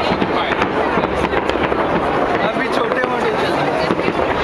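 New Year fireworks going off continuously: a dense run of crackles and bangs, with people's voices talking over them.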